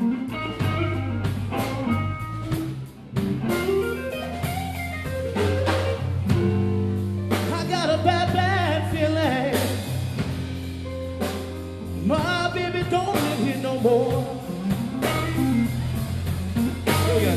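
Blues trio playing a slow blues: a lead guitar solos with bent notes and wide vibrato over bass guitar and drums.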